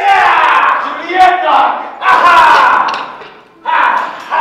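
A man's loud yelling as a sabre fight begins: four long, drawn-out war cries with short breaks between them, the last starting just before the end.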